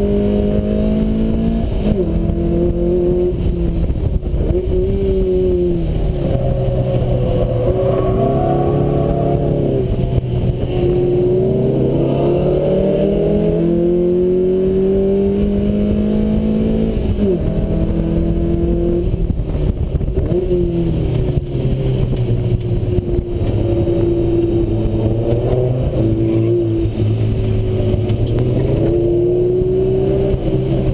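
Lotus Elise S1's Rover K-series four-cylinder engine at speed on track, heard from the open cockpit: its pitch climbs under acceleration and drops suddenly at upshifts, then falls away when the car slows for corners, over and over.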